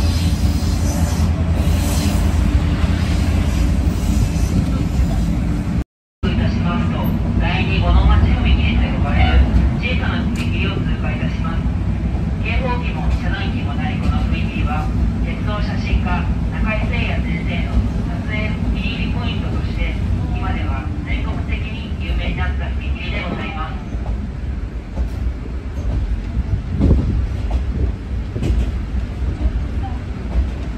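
Steady low drone of a diesel railcar's engine and running gear heard inside the car, with indistinct passenger voices through the middle stretch. The sound drops out completely for a moment about six seconds in.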